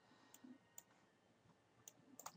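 Near silence broken by a few faint clicks of a computer mouse.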